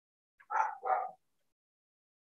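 A dog barking twice in quick succession, two short barks.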